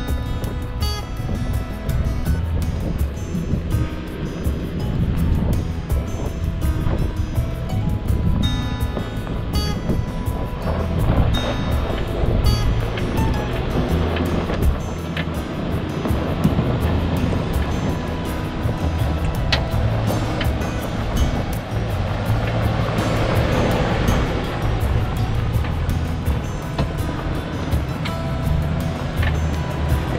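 Background music over the sound of a Hummer H3 SUV driving up a rocky dirt trail: a steady low engine rumble and tyre noise, with wind rushing on the microphone.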